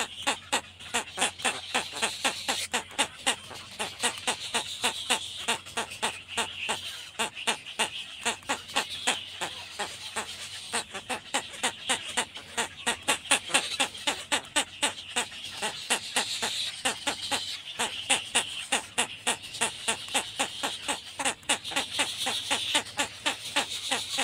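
Egret chicks begging at the nest, a rapid run of short ticking calls repeated several times a second while the adult feeds them.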